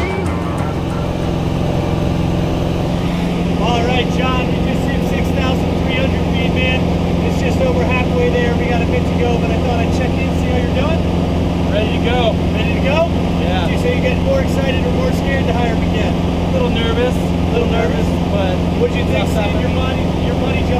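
Light aircraft's piston engine and propeller running steadily at climb power, a loud, even drone heard from inside the cabin, with indistinct voices talking over it.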